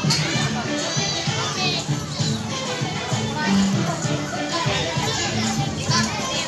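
Music playing with many children's voices chattering and calling out over it, a busy crowd of kids.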